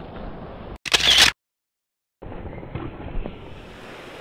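A camera-shutter sound effect: one short, bright shutter burst about a second in, followed by just under a second of dead silence before faint wind and surf noise return.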